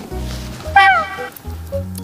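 A cat's meow about a second in, one short call falling in pitch, over steady background music.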